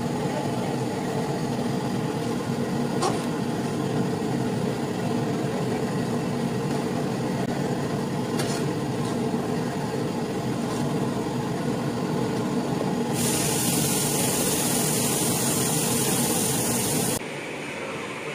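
Steady roar of a gas burner under a large aluminium cooking pot, with a few sharp clicks of a metal spatula scraping the pot as shallots and spice powder are stirred. A brighter hiss joins for a few seconds near the end, then the roar cuts off suddenly.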